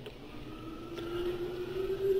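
A steady droning hum that slowly rises in pitch and grows louder.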